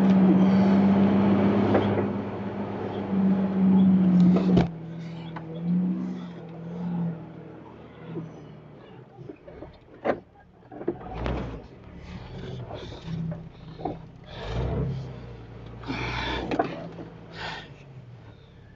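A Jeep crawling over a rocky trail. A loud steady hum cuts off sharply with a click about four and a half seconds in, and after it come quieter running noise with scattered knocks and low rumbles as the vehicle works over rocks.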